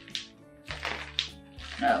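Plastic bubble wrap with large bubbles crinkling in a few short bursts as fingers pinch a bubble that won't pop, over steady background music.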